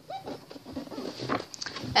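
Sheets of scrapbook paper being lifted and turned over by hand, with a few short paper rustles about two-thirds of the way through. A brief faint pitched sound comes just after the start.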